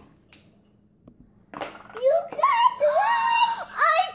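A young girl's high-pitched, drawn-out wordless exclamation of excitement, starting about a second and a half in after a near-silent pause broken by a faint click or two.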